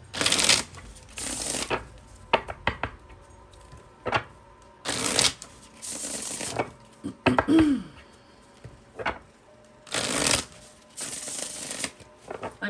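A tarot deck being shuffled by hand: quick bursts of riffling cards that come in three pairs, with light card clicks in between.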